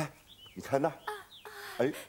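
A man laughing loudly in several short bursts, with birds chirping in the background.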